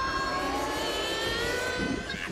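Fantasy film soundtrack during a sorcery duel: a sustained high whining tone that drifts slowly in pitch, over a low rumble, in the manner of a magic-energy sound effect.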